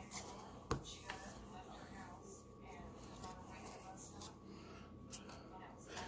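Faint handling of trading cards, with one sharp tap a little under a second in and a lighter one just after; otherwise low room noise.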